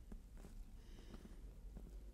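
Very faint rustle of thin Bible pages being handled and turned, with a few small soft ticks.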